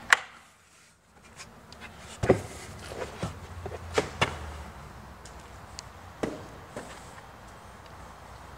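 Carpeted cargo floor panel of a hatchback being unclipped from its tabs, lifted out and handled: a sharp click just after the start, then several knocks and light rattles.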